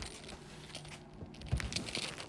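Handling noise from a phone being moved about: light clicks and knocks, a small cluster of them about one and a half seconds in, over a faint steady low hum.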